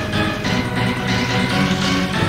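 Early-1990s UK rave/hardcore dance music from a DJ mix: an electronic track with a steady drum beat, a heavy bass line and sustained synth chords.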